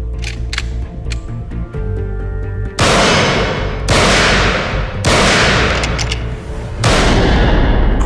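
Four shots from a Winchester .38-calibre lever-action rifle, the first three about a second apart and the last after a slightly longer gap, each followed by a long reverberant decay, over background music.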